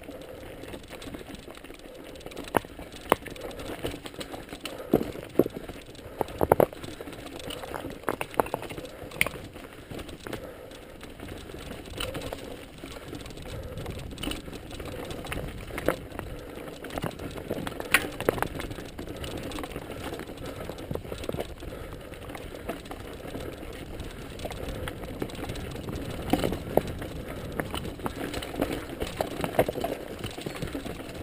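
Mountain bike ridden over a rocky singletrack trail: a steady noise of tyres running over stones and dirt, with the bike rattling and frequent sharp knocks as the wheels strike rocks.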